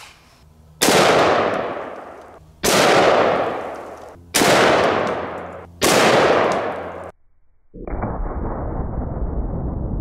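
Four shots from an AR-15 rifle firing .223 full metal jacket rounds, spaced about one and a half to two seconds apart, each followed by a long echo that fades away. After a brief silence a steady, muffled low noise starts and runs on.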